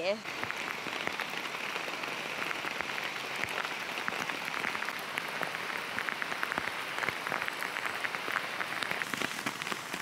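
Heavy rain, really hammering it down: a steady hiss dense with the sharp ticks of individual drops striking.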